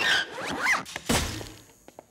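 A small wooden cart on casters being wheeled across a floor: a short rattle and a quick rising swish, then a single thunk about a second in that fades away.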